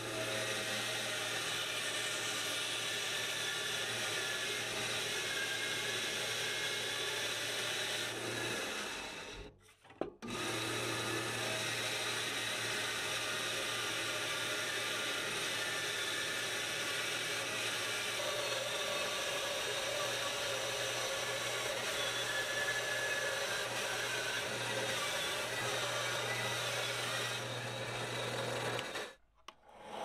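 Bandsaw running and cutting a curve through a thick red cedar board: a steady motor hum under the hiss of the blade in the wood. The sound cuts out briefly twice, about ten seconds in and just before the end.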